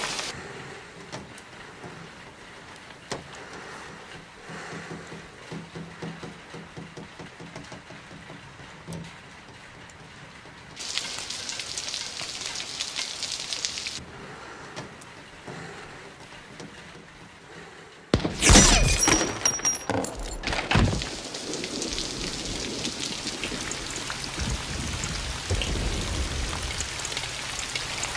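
Steady heavy rain falling, louder for a few seconds near the middle. About eighteen seconds in, a sudden loud rifle shot and shattering glass cut in, and the rain then carries on.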